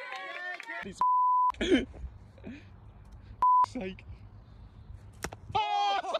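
Two censor bleeps, steady electronic tones of the same pitch, each blanking out the speech beneath it: a half-second bleep about a second in and a shorter one about three and a half seconds in.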